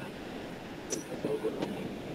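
Steady low background noise from an open microphone on a video call, with a couple of faint clicks and a faint murmur of a voice about a second in.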